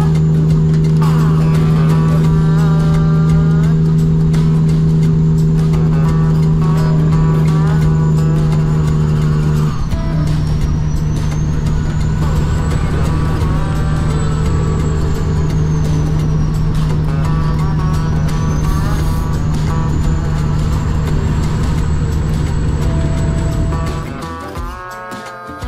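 A Cummins ISX diesel in a Kenworth W900L drones steadily at highway speed, heard inside the cab. About ten seconds in it dips briefly and a high whine glides down and back up. Music plays along with it.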